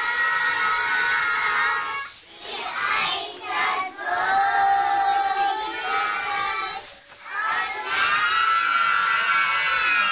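A group of small nursery-school children singing together, loud and a little shouty, in long held lines with short breaks between them every two to three seconds.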